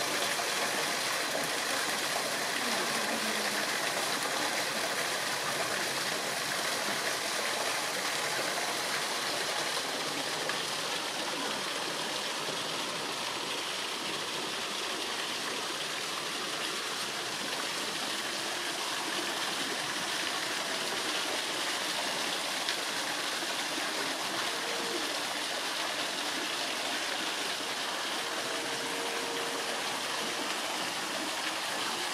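Steady rush and babble of water running over rocks in a small stream.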